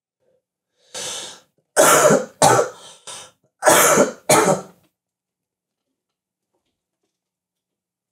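A man coughing hard after a hit of smoke: a softer first cough about a second in, then a quick run of about five harsh coughs over the next three seconds.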